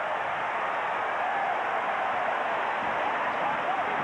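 Large football stadium crowd cheering a home-team touchdown, a steady dense mass of voices with no single voice standing out.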